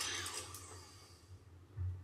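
Quiet room tone: a steady low hum under faint hiss, with a sound trailing off in the first half second.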